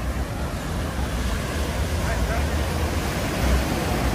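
Ocean surf breaking and washing up a sandy beach, a steady rushing noise, with a low wind rumble on the microphone.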